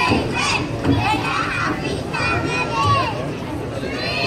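Many young children's high-pitched voices chattering and calling out over one another, with a crowd murmuring underneath.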